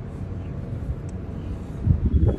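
Steady low outdoor rumble with no clear tone, and a single louder thump near the end.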